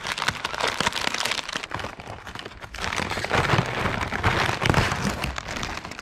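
Foil cookie-package wrapper crinkling and crackling as it is handled and pulled at with one hand to tear it open, heavier and louder through the second half.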